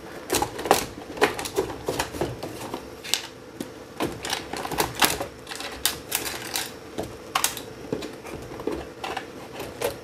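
Sheet-metal back lid of a video mixer being worked loose and lifted off its chassis: a quick, irregular run of small clicks and taps throughout.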